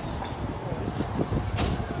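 Street traffic noise: a steady low rumble of vehicles on the road, with a short hiss about one and a half seconds in.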